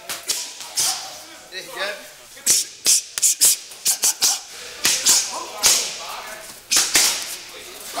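Boxing gloves striking training pads: over a dozen sharp smacks in quick, irregular combinations.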